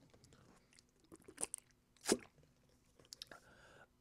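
A few faint, scattered clicks and crinkles of a plastic water bottle being handled after a drink.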